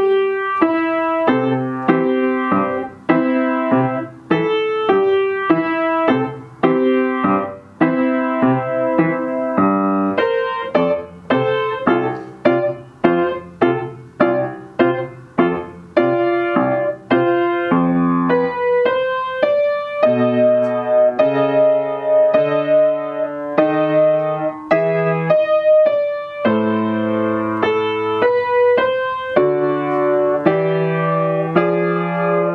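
Piano played with both hands: a steady, beat-driven run of melody notes over chords, the notes coming faster from about a third of the way in.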